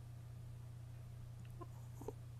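Quiet room tone with a steady low electrical hum, and a couple of faint short sounds near the end.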